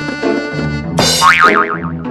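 Cartoon-style comedy music with a boing sound effect: from about a second in, a loud pitch wobbles rapidly up and down over the backing notes.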